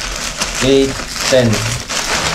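Foil and plastic wrappers crinkling as a pile of foil-wrapped chocolates is handled and counted out by hand.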